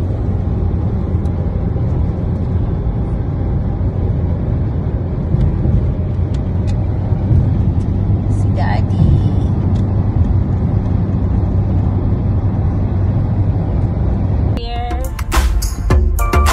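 Steady low road and engine rumble heard inside the cabin of a moving car. A brief voice sounds about halfway through, and music with a beat comes in about a second before the end.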